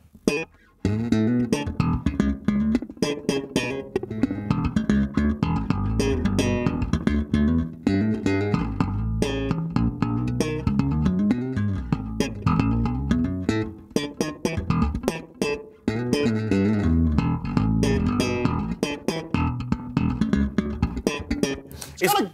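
Chowny SWB Pro active electric bass played through the Chowny Bass-Mosphere chorus and reverb pedal with its reverb switched in: a busy run of plucked notes starting about a second in, while the reverb knob is turned. The reverb is a very small-room reverb that sounds a little gated.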